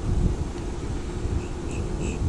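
Wind buffeting the microphone in an uneven low rumble, with a faint steady hum underneath.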